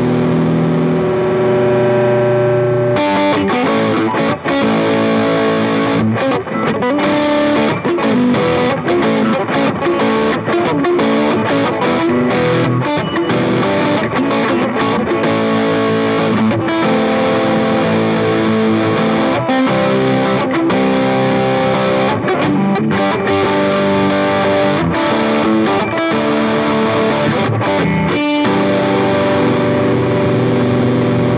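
Distorted electric guitar played through a LunaStone Distortion 1 pedal that is switched on. A chord rings out for the first few seconds, then busy riffing with quick note changes follows, and the passage ends on another held chord.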